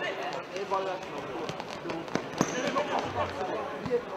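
A futsal ball being kicked and striking the hall floor: a few sharp thuds, the loudest about two and a half seconds in. Voices from players and spectators continue underneath.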